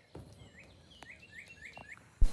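Faint bird chirps, with a quick run of about five short chirps in the second half and a faint click about a second in.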